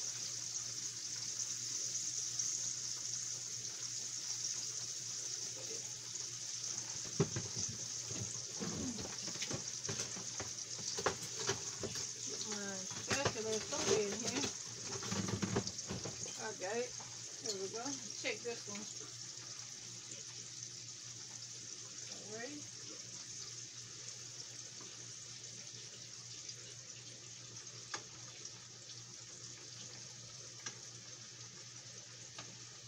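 Breaded green tomato slices frying in hot oil on the stove: a steady high sizzle that grows gradually fainter, with clicks and knocks of a utensil against the pan through the middle stretch.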